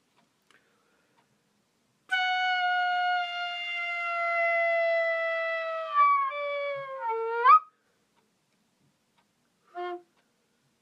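Solo recorder holding one long note that sags slowly in pitch for about four seconds, then bends down in steps and scoops sharply upward before breaking off. After a pause, a short lower note sounds near the end.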